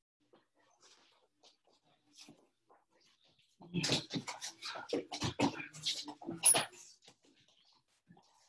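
Two wrestlers hand-fighting on a mat: a quick run of slaps, scuffs and wrestling-shoe squeaks lasting about three seconds from midway, the loudest squeak near the end of the run.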